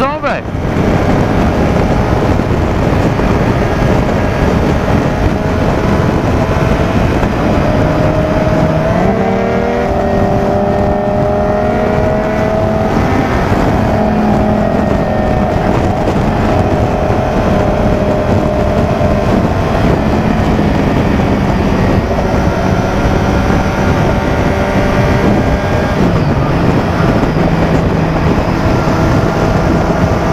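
Motorcycle engine running at highway speed under heavy wind rush on the helmet microphone. The engine note rises about a third of the way in as the bike accelerates, then dips briefly and picks up again near the end.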